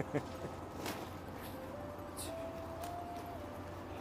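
Quiet outdoor city background with a steady low hum. A faint thin tone steps between a few pitches through most of it, with a few light clicks.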